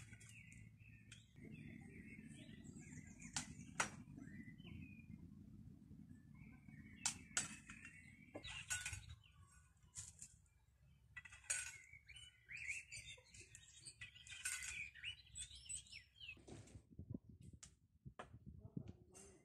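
Sharp clicks every second or few as a sword blade strikes the coat-hanger arm of a practice dummy during parry-and-riposte drills, over small birds chirping.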